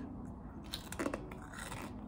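A hard little baked cracker being bitten and chewed, crunching several times in short sharp cracks.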